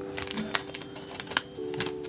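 Soft background music holding a steady chord that shifts about one and a half seconds in, with several light clicks and taps from handling the sticker sheets.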